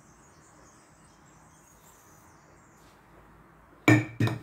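Low room tone with faint high-pitched chirping, then one sharp knock just before the end as a glass spice jar is handled on the counter.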